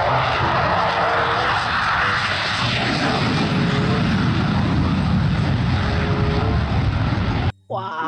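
F-16 fighter jet engine running on afterburner during a takeoff run: loud, steady jet noise that stops abruptly about half a second before the end.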